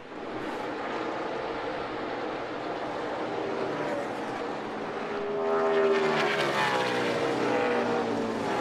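NASCAR Cup race car V8 engines running at full speed. About five and a half seconds in, the engine sound gets louder and more clearly pitched as the #4 Ford Mustang passes close by.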